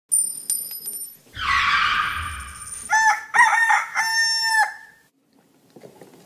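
A crowing call in several short syllables, about three seconds in, ending in one long held note. Before it come a few clicks and a rush of noise lasting about a second and a half.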